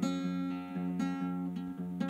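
Acoustic guitar chords played in a steady rhythm of strokes, the notes ringing on between them.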